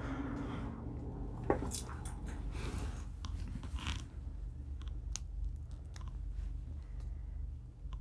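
Clothing rustling and handling noise as a phone camera is moved about, with scattered soft clicks and scrapes over a low steady hum.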